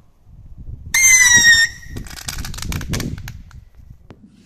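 A firework whistle: a loud, shrill whistle lasting under a second, its pitch falling slightly, followed by scattered sharp clicks.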